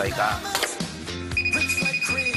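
A steady high electronic beep begins about one and a half seconds in, the warning buzzer of the G-Shock drop-test machine raised to its 2 m drop height, over background music.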